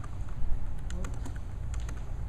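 Several quick clicks on a laptop's keys, in two short groups, over a steady low room hum, with a soft thump about half a second in.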